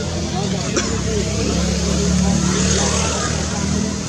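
A motor vehicle's engine running close by: a steady low drone that grows louder toward the middle and eases off near the end, as a vehicle passes. Voices can be heard under it, and there is a single click about three-quarters of a second in.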